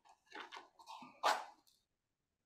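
Soft handling sounds of a candle being lit: a few faint rustles and clicks, then one louder short scratch about a second in.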